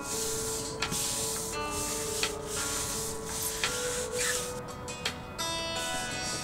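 Stiff bristle brush scrubbing a wet, painted wooden exterior wall with detergent, a rasping swish in repeated strokes, over background music with held notes.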